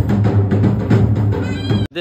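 Dhol drums beating fast and loud with heavy low booms, and a high wavering cry rising over them near the end before the sound cuts off abruptly.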